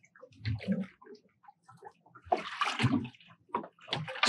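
Lake water lapping and splashing against the side of an aluminum rowboat, with scattered light knocks from a sensor cable being paid out hand over hand over the gunwale. The splashing is densest a little past halfway through.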